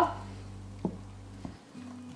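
Silicone spatula stirring whipped topping into thickened strawberry gelatin in a bowl: faint soft stirring with a couple of light taps, over a low steady hum that cuts out about one and a half seconds in.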